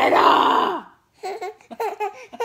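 A woman's harsh, growled heavy-metal-style scream, held and then cut off just under a second in. After a short pause come short, bouncing bursts of a baby's laughter.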